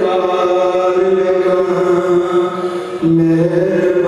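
A man's voice chanting unaccompanied, holding one long drawn-out note, then after a short breath about three seconds in starting another, lower note.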